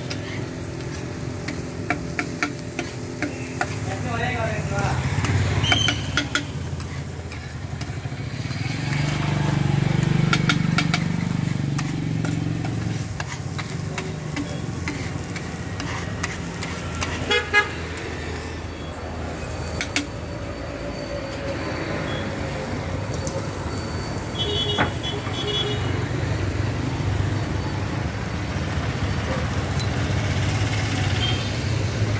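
A metal spatula clanks and scrapes on a flat griddle, in quick runs of strikes during the first few seconds and again briefly around the middle. Under it runs street traffic, with vehicle horns honking and people's voices.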